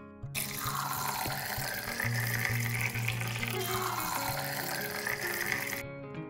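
Liquid poured into a glass, the pitch of the pour rising twice as the glass fills. The pouring stops suddenly just before the end.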